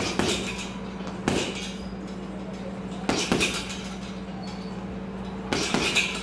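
Boxing gloves hitting a heavy punching bag: four bursts a second or two apart, some a single punch and some a quick one-two pair, as he turns his waist into the punches.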